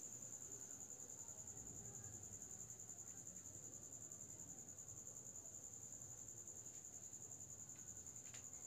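Faint, steady high-pitched trill that pulses rapidly, like an insect such as a cricket chirring, over an otherwise near-silent room.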